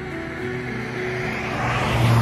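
A car approaching along the road, its engine and tyre noise swelling toward the end, over soft background guitar music.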